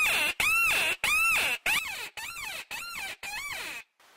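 Mouth-blown predator call sounded in a run of about seven wailing cries, each rising then falling in pitch, to lure coyotes or black bears. The first three cries are loud and the rest softer, and the run stops just before the end.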